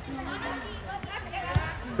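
Faint background voices of children and onlookers in a large indoor sports hall, with a single thump about one and a half seconds in.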